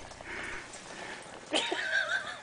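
Faint rustle of small hands grabbing rice on a plate, then, about one and a half seconds in, a toddler's short, high, wavering vocal sound.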